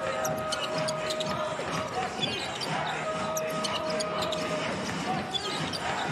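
Basketball game sound on a hardwood court: the ball being dribbled and sneakers squeaking, over music from the arena speakers with held notes.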